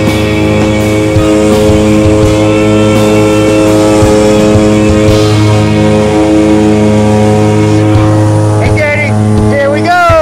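Jump plane's engine running steadily, heard from inside the cabin, with voices briefly near the end.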